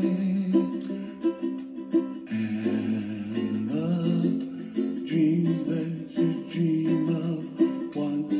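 Background music: a ukulele playing a gentle, steady accompaniment.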